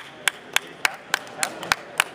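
One person clapping close by in a steady rhythm, about three and a half claps a second, over faint voices in the hall.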